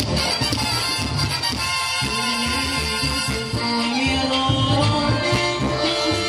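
Live technobanda music from a full band with saxophones, playing at a steady dance beat.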